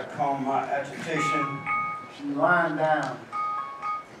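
A man's spoken stage dialogue with a few held notes of live underscore music beneath it, in two short phrases: one about a second in and another near the end.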